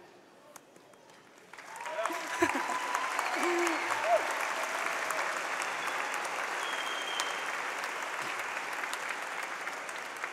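A large audience applauding. The applause breaks out about a second and a half in after a brief hush, with a few voices calling out as it starts, then holds steady and slowly tapers toward the end.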